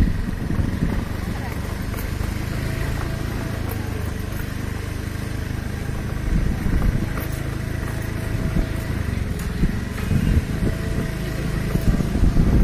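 A motor scooter's small engine running close by as it rides past, with indistinct voices behind it.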